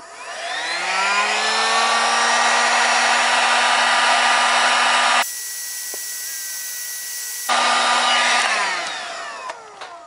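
Electric heat gun blowing hot air onto heat-shrink tubing: its fan motor spins up with a rising whine, runs steadily, and winds down with a falling whine near the end. There is a quieter stretch in the middle.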